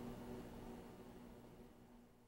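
Near silence: faint room tone with a low steady hum, fading out.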